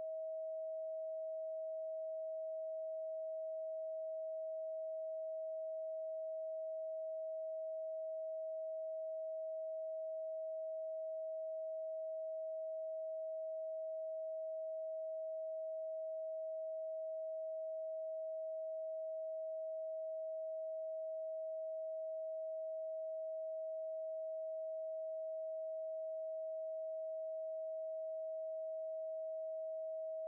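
A steady 639 Hz pure sine tone, a single unchanging pitch with no music or other sound over it.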